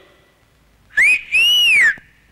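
A person whistling loudly, two notes about a second in: a short rising one, then a longer one that rises and falls, like a calling or wolf whistle.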